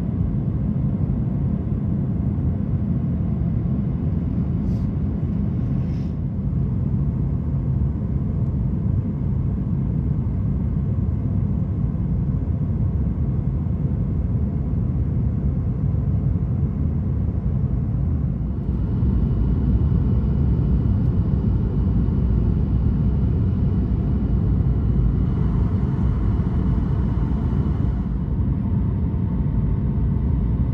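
Steady low rumble of engine and airflow noise in a Boeing 737-800's passenger cabin during descent, getting a little louder and brighter about two-thirds of the way in.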